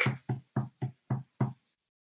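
A rapid, even series of short knocks, about three or four a second, that stops about one and a half seconds in.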